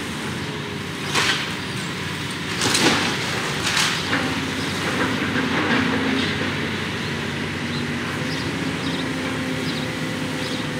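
Demolition excavator's diesel engine running steadily as it tears into a brick building, with a few crashes of falling debris about a second in and again around three and four seconds.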